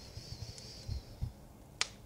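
Fireplace crackling: soft low thuds and a faint hiss, with one sharp pop near the end.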